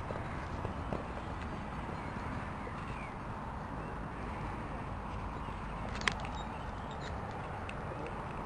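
Faint hoofbeats of a horse cantering on grass under steady wind noise on the microphone, with a single sharp click about six seconds in.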